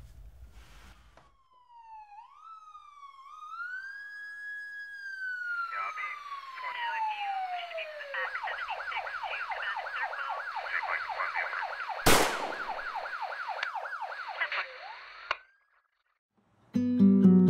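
Emergency vehicle siren: a slow rising-and-falling wail that switches about six seconds in to a fast yelp, then cuts off suddenly near the end. A single loud sharp bang comes about twelve seconds in.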